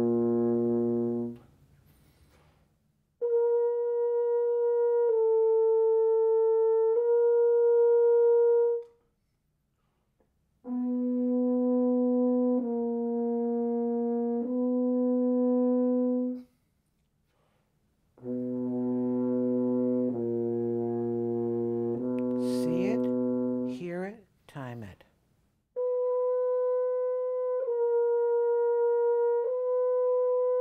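Double French horn playing held notes in groups of three, each note about two seconds long, with a rest of about two seconds between groups; the groups alternate between a middle register and an octave lower, most dipping a step on the middle note. It is a note-tasting accuracy drill, each entrance heard in advance and placed by subdividing the time.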